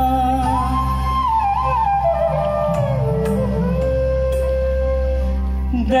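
Live Garhwali folk music from a stage band: one slow melody of long held notes that slide between pitches, over a steady low drone.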